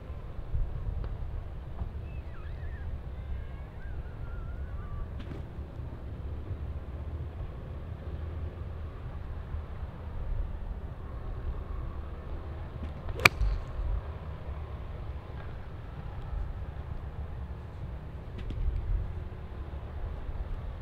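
A golf iron strikes a ball off the tee: one sharp, crisp click about 13 seconds in. A steady low wind rumble runs underneath.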